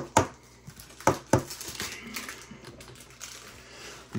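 Baseball trading cards being flipped through by hand: four sharp snaps of card against card in the first second and a half, then soft rustling.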